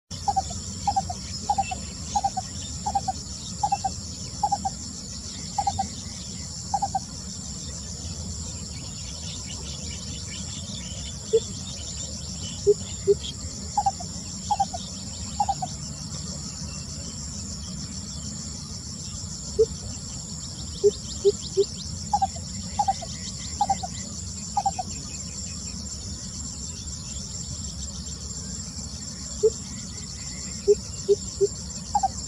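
Lesser coucal calling: bouts of repeated low hoots at about one a second, nine in the first bout and three or four in later ones, with shorter, lower notes in pairs and threes between bouts. A steady high insect chirring runs underneath.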